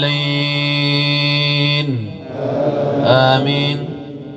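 A man's voice reciting the Quran in melodic tajwid style, holding one long drawn-out note that slides down and breaks off about two seconds in. A second, shorter sung phrase follows and ends just before the close.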